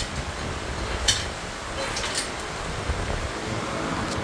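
Steady rumble and hiss of a mechanic's shop, with a sharp metallic clink about a second in and a lighter one about two seconds in.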